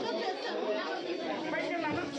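Several people talking at once: indistinct overlapping chatter.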